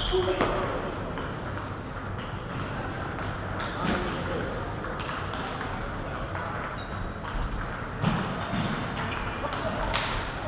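Table tennis ball hits at the very start as a rally ends, then scattered light ball taps and bounces over the hum of a large hall.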